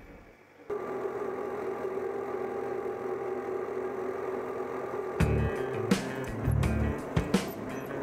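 YuMZ tractor's diesel engine running steadily, heard from inside the cab. About five seconds in, background music with a bass line and a beat comes in over it.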